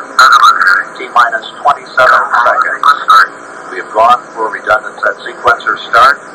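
Speech only: voices talking during a launch countdown broadcast, with the thin sound of a TV speaker recorded onto audio cassette.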